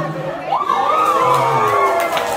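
A crowd of party guests cheering and shouting, with one long whoop that rises and falls, just as a sung song stops.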